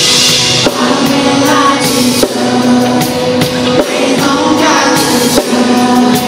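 Live pop-rock band music played through a PA: a male lead vocal over drum kit and backing instruments, with a bright cymbal crash right at the start and steady drum hits about every one and a half seconds.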